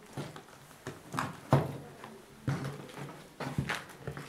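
A few scattered knocks and bumps in a small room, with a brief 'yeah' spoken about a second and a half in.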